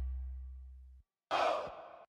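The last low bass note of a hip-hop beat dies away over the first second, then after a short silence comes one brief, breathy sigh.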